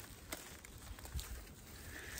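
Faint rustle of a rope being handled and drawn through a knot, with two soft knocks.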